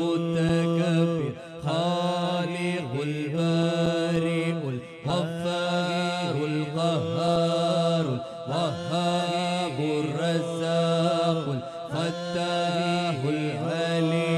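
Slow, ornamented Arabic chanting of the names of God, voices holding long notes and gliding between pitches over a steady held low tone, with no drumming.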